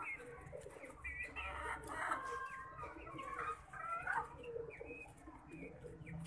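Young Aseel chickens calling: many short, high calls overlapping and coming one after another throughout.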